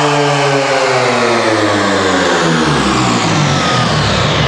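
Electronic dance music over a festival sound system: a sustained synth tone sliding steadily down in pitch over about four seconds, a pitch-down sweep in a DJ set.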